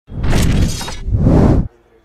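Two loud shattering crashes, the first about a second long and the second about half a second, the second cutting off suddenly: an edited-in sound effect at the video's opening.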